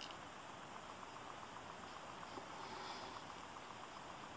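Quiet, steady hiss with no distinct events: room tone.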